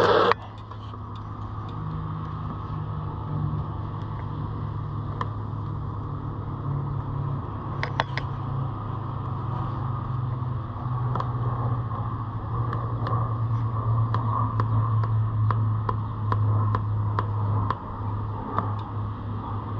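A steady low mechanical hum whose pitch shifts slightly now and then, with a sharp brief knock at the start and scattered light clicks and ticks from gloved hands working over a knobby fat bike tire.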